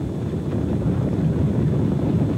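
Steady low rumble of outdoor racetrack sound, with wind buffeting the microphone.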